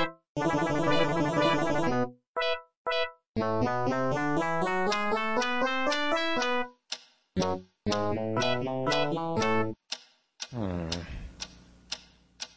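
Electronic keyboard music: short separate notes and a dense burst of chords, then a quick run of notes, ending in bending, sliding tones about ten seconds in.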